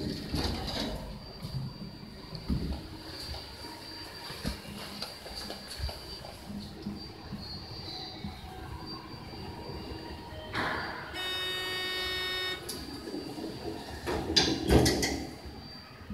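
A hydraulic passenger elevator at floor level with its doors open. About three-quarters of the way through, a steady electronic tone sounds for about a second and a half. Near the end, the two centre-opening doors slide shut with a louder rush and a thump.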